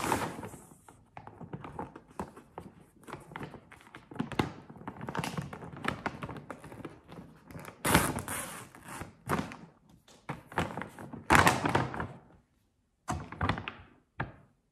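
A cat scratching and pawing at a bag of cat food: irregular scratching and rustling strokes with dull thunks, loudest about eight and eleven seconds in. It is the cat's signal that he is hungry and wants feeding.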